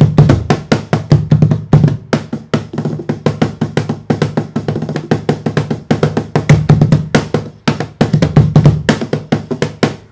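A home-made 12 mm plywood cajon with a single snare spring, played by hand in a fast groove: deep bass thumps mixed with many sharp, crisp slaps on the front panel.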